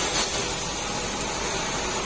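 Steady background hiss with no distinct source, and a faint click near the start.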